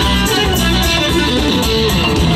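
Live band playing, electric guitar to the fore over bass and a drum kit keeping a steady beat.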